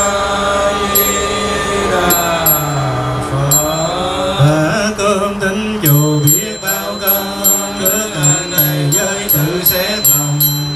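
Buddhist monks chanting together in Vietnamese, part of the pre-meal offering chant. It starts as long, drawn-out melodic phrases and about six seconds in becomes a rhythmic recitation of about two syllables a second.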